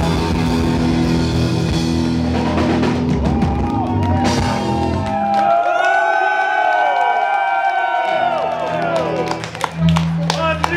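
Live rock band with drum kit, bass and electric guitar playing loudly. About five seconds in, the bass and drums drop out for about three seconds, leaving electric guitar notes sliding up and down in pitch. The full band comes back in before a loud hit near the end.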